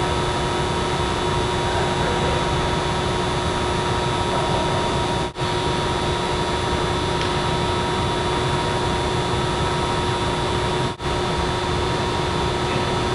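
A steady rushing noise with a constant hum, like a large ventilation blower running. It cuts out briefly twice, about five seconds in and near the end.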